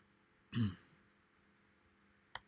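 A man clears his throat once, briefly, about half a second in, against faint room tone.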